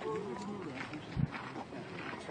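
Faint voices of people talking some way off, with a brief low thump a little past a second in.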